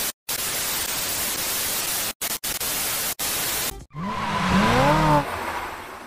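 Loud TV static hiss, cut off abruptly several times by short dropouts, as a glitch transition. About four seconds in it gives way to a sound effect of tones sweeping up and then down, which fades near the end.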